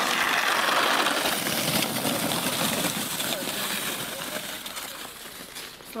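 Round plastic snow sled scraping over packed snow, a steady rough hiss that fades gradually as it slides away.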